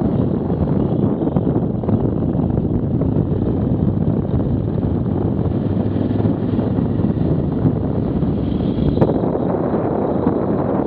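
Steady wind noise rushing over the microphone of a camera on a moving motorcycle, mixed with the motorcycle running at road speed.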